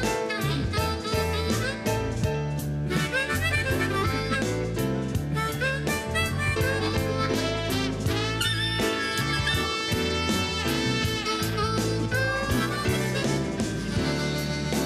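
Live blues band playing: a trumpet solo over bass and drums, with harmonica near the end.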